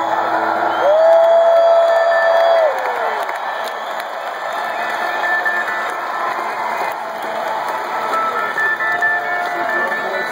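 Concert crowd cheering and whistling as a live rock song ends, with one long held call ringing out about a second in, the loudest moment. Stray guitar notes sound faintly under the cheering.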